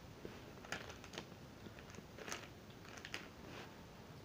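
Faint, scattered crunches and crackles of someone eating a crunchy snack from a packet.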